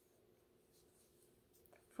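Near silence: faint soft rustles and light ticks of yarn being worked with a crochet hook, over a low steady hum.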